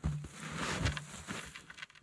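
Irregular scraping, crackling and rustling as a thin, freshly cut wooden pole is handled and propped against a tree trunk.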